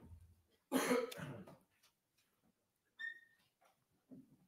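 A single cough about a second in, followed near the end by a short high squeak.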